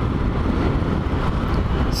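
Motorcycle on the move: steady rush of riding wind over the microphone mixed with the bike's engine and road noise.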